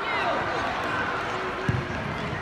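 Faint voices of players and spectators in a large hall, with a single thud of a soccer ball being kicked near the end.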